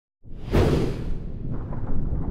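Whoosh sound effect of a TV title ident, sweeping in from silence a fraction of a second in, over a deep rumble that carries on after the high part fades.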